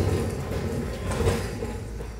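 Steady rolling, scraping noise of a person sliding across the garage floor to reposition at the front wheel of a motorcycle.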